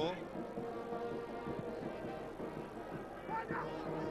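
Stadium crowd ambience from a football match, with steady droning tones from horns blown in the stands and a short shout about three seconds in.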